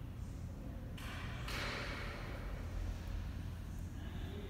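Low steady rumble of room noise, with a brief hiss that starts suddenly about a second in and fades over the next second or so.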